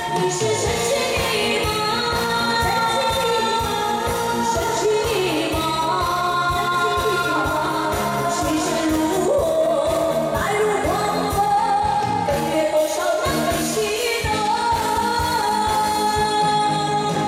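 A woman singing a pop song into a microphone over an amplified backing track with a steady beat, with long held and gliding notes, heard through the stage loudspeakers.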